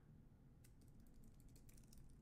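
Faint computer keyboard typing: a quick run of keystrokes, starting a little over half a second in, as a terminal command is deleted and retyped.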